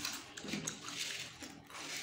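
Faint eating sounds: food picked up by hand from plates and chewed, with soft rustling and a few light ticks.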